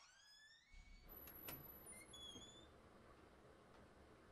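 Faint electronic sound effects: a rising tone in the first second, then a click and a few short high chirps.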